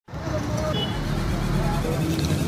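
Street traffic noise, with passing motorbikes and people's voices in the background.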